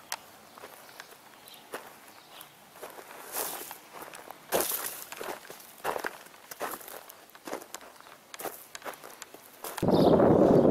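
Footsteps crunching at an uneven pace over broken concrete-block rubble and dry earth, a few of them louder than the rest.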